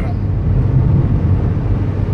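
Steady engine and tyre noise inside a moving car's cabin: a low, even drone.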